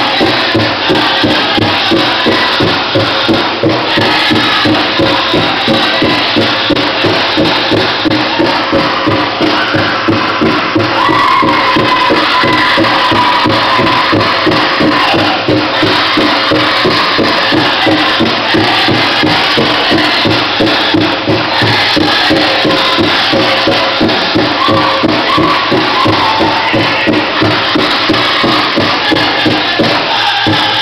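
Powwow drum group beating a big drum in a steady, even rhythm while singing a jingle dress song, with the metal jingle cones on the dancers' dresses rattling.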